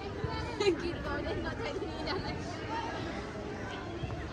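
Overlapping chatter and calls from players and spectators at an outdoor football match, with a brief louder sound less than a second in.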